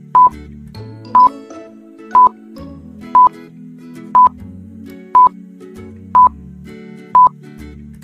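Quiz countdown timer beeping: a short, loud electronic beep once a second, eight times, over soft background music.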